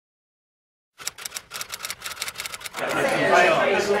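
After a second of silence, a quick, uneven run of sharp clicks for about two seconds, then voices rising in a general hubbub.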